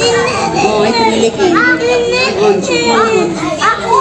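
Young children's voices chattering and calling out while they play, with a few high rising calls.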